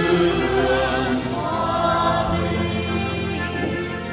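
Church choir singing a hymn in several parts over an accompaniment of held low bass notes, the chord shifting about two seconds in.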